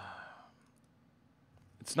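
A man's breathy sigh, an exhalation fading out over about half a second, followed by quiet.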